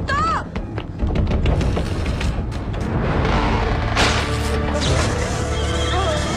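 Film soundtrack: a short cry and a few knocks at the start, then dramatic background music that swells with a noisy surge about four seconds in.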